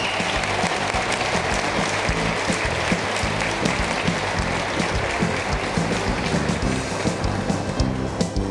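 Audience applause over background music; the clapping thins out in the last couple of seconds while the music carries on.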